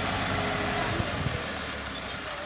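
Massey Ferguson 385 tractor's diesel engine running steadily at low revs as the tractor creeps along towing its trolley.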